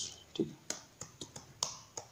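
A computer keyboard being typed on: a run of about eight separate key clicks, unevenly spaced, as a single word is typed.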